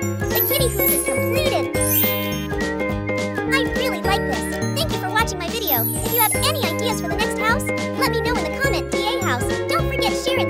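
Cheerful children's background music: a bass line under tinkling chime-like notes, with quick shimmering high runs about two seconds in and again around six seconds.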